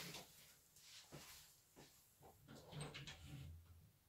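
A cat meowing faintly at a door, among a few soft, short knocks and shuffles.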